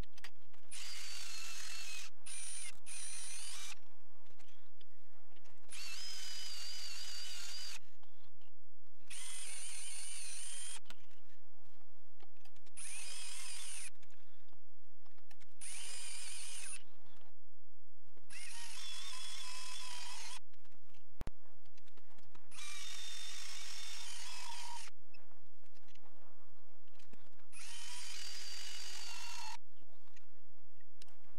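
Small high-speed drill spindle on a lathe toolpost drilling radial holes in a metal part: its motor whines in repeated bursts of one to three seconds with short pauses between, over a steady low hum.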